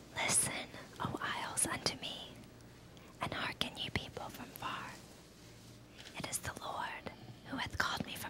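Whispered speech in several short phrases with brief pauses between them.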